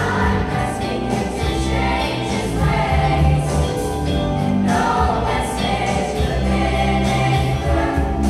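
A youth choir singing together over an instrumental accompaniment with a strong, steady bass line.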